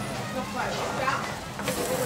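A piece of gyukatsu (breaded beef cutlet) sizzling on a small tabletop grill. The hiss grows brighter near the end, over faint restaurant chatter.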